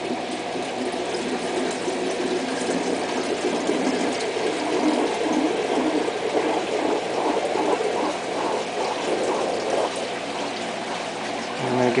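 Water draining from an aquarium surge tank through its open electric valve, a steady rush of water that goes on while the tank empties.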